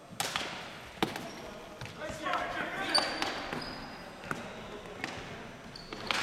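Ball hockey sticks and ball clacking on a gymnasium floor: a string of sharp knocks, a second or so apart, echoing in the hall. Players shout briefly near the middle.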